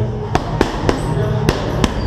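Boxing gloves smacking into focus mitts during pad work: a quick run of three punches, then two more.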